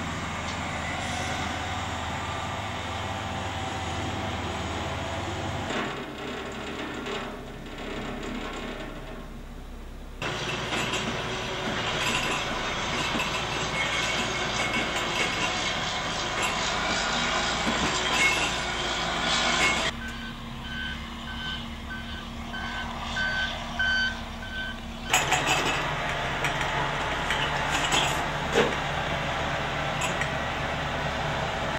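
Heavy earthmoving machinery, a bulldozer among it, running and working close by, heard in several takes of different loudness. Past the middle, a reversing alarm beeps steadily about twice a second for some five seconds.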